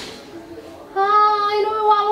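A woman's voice holding one long, steady high note, beginning about a second in.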